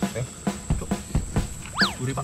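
Background music with a quick percussive beat of about four strikes a second, with a short rising-and-falling whistle-like sound effect near the end.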